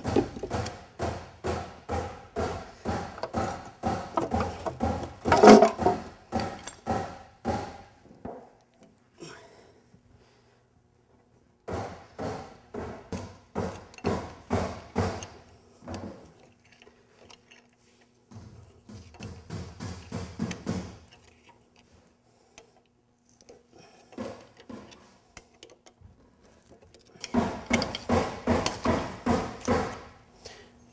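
Metal striking metal on a CAT diesel engine's front end: quick repeated taps, about four a second, each ringing briefly. The taps come in several bursts with short pauses between them.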